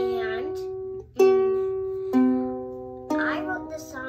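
Ukulele strummed in single chords about a second apart, each left to ring and fade, the chord changing about two seconds in. A voice is heard over the first and the last chord.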